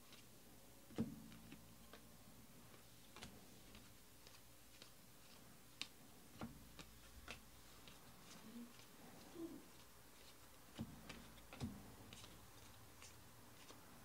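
Faint, irregular clicks and taps of a stack of football trading cards being flipped through and sorted by hand, the sharpest click about a second in.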